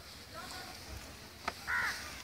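A crow caws once near the end, just after a single sharp click.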